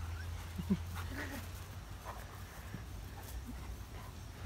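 A dog giving a few short, faint whines and yips, over a low steady hum.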